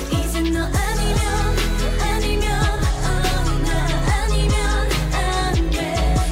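Electropop song with female vocals singing in Korean over a steady electronic beat, with deep bass notes that fall in pitch on each hit.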